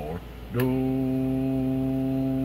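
A man's voice holds one steady low hum at an even pitch, starting about half a second in. It is a held note into the CB microphone to modulate the transmitter and drive the amplifier for a wattmeter power reading.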